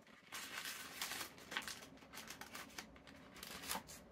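Tissue paper rustling and crinkling softly in irregular crackles as it is unfolded and pulled back by hand.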